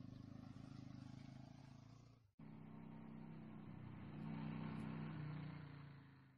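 Motorcycle engine running steadily at a distance as the bike rides along a dirt track. The sound breaks off at an edit about two seconds in, resumes, swells between four and five seconds in, then fades away.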